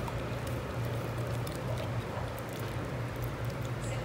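A bull terrier licking and chewing a piece of soft, juicy mango held in a hand: wet smacking and small clicks scattered all through. A steady low hum runs underneath.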